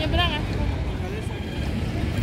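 Steady low rumble of city street traffic, with a short spoken word at the start.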